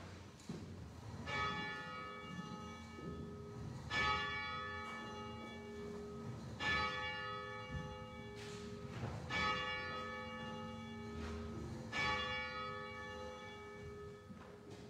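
A bell tolling: five slow strokes about two and a half seconds apart, each left to ring on until the next.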